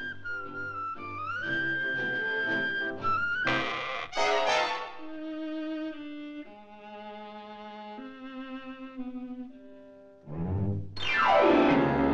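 Orchestral cartoon score led by bowed strings: sliding melodic lines, a sudden loud passage about three and a half seconds in, then long held notes, growing loud again near the end.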